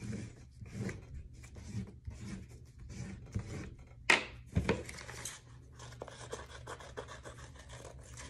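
Drawing strokes scratching on paper, then scissors cutting through painted paper in short, irregular snips. A sharp knock about four seconds in is the loudest sound.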